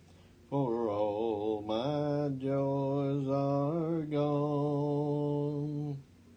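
A lone man singing a hymn unaccompanied, very slowly, drawing each syllable out into long held notes with a steady vibrato; the singing starts about half a second in and moves through a few note changes.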